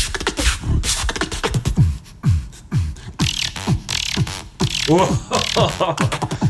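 Beatboxing: a quick run of deep, falling bass drops punctuated by sharp clicks, then hissy high sounds and wavering voiced tones near the end.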